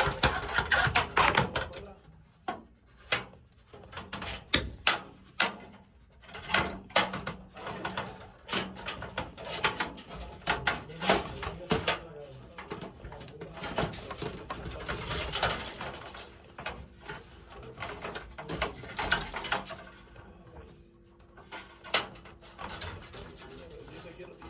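Irregular short knocks, clicks and scrapes of cable and a fishing rod being worked through a metal ceiling grid, with faint voices now and then.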